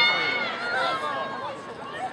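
Several voices shouting and calling over one another at a soccer game, opening with a loud high-pitched shout, then trailing off into quieter chatter.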